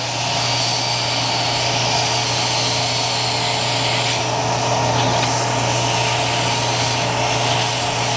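Electrocautery pencil with its smoke-evacuation suction running while it cuts through the breast implant capsule: a steady hiss with an unchanging electronic hum, starting abruptly and holding without a break.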